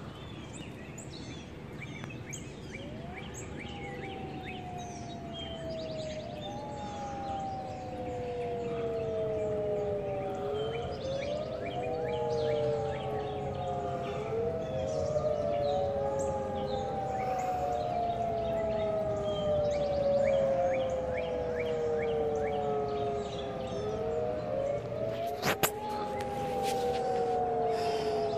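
Outdoor tornado warning sirens sounding. The wail climbs quickly and falls slowly, over and over, with sweeps from more than one siren overlapping. It starts a few seconds in and grows louder.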